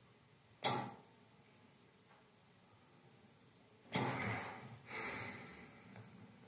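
A man breathing and shifting while sitting at a table in a quiet small room: a short sharp click about half a second in, then two longer breathy rushes close together near the end.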